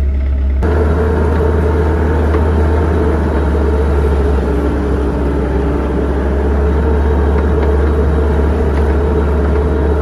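JCB telehandler's diesel engine running, heard from inside the cab; it gets louder about half a second in, then runs steadily as the machine drives off.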